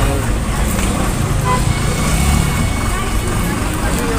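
Busy market bustle: indistinct voices over a steady low rumble.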